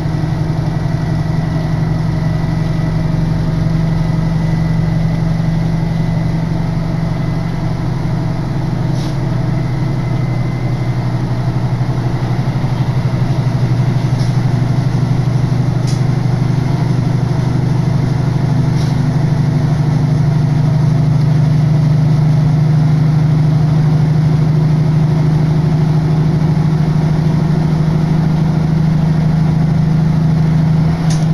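Diesel railcar engine running under power, heard from inside the carriage as a loud, steady low drone that grows slightly louder in the second half.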